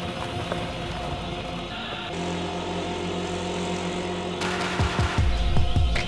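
Background music with a motorbike engine running as it rides past, a steady low hum coming in about two seconds in and low rumbling swells near the end.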